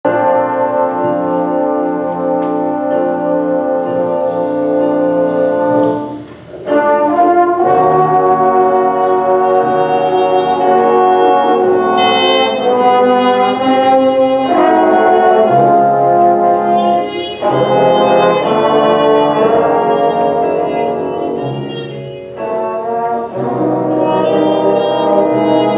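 Junior high school jazz band playing, with trumpets, trombones and saxophones sounding held chords that change every few seconds. The band breaks off briefly about six seconds in and comes back in together, then eases off for a moment near the end.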